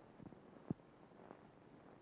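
Near silence: a faint steady hiss, broken by one brief click about two-thirds of a second in.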